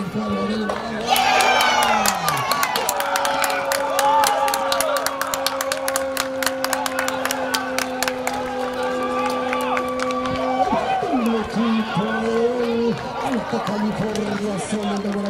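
Spectators cheering and shouting as a goal goes in, over a rapid run of sharp claps. One voice holds a long shout of about eight seconds that cuts off sharply.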